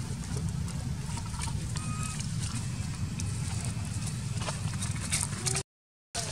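Outdoor forest-floor ambience: a steady low rumble with scattered small clicks and rustles of dry leaves as macaques shift about on the ground, and a couple of faint short high tones about two seconds in. The sound drops out briefly near the end.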